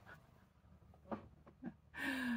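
Near silence: room tone, broken by two brief faint sounds about a second in and half a second later.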